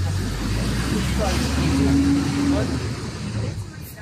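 Street traffic noise with a vehicle engine running close by, a steady low hum under even road noise. Faint voices come and go.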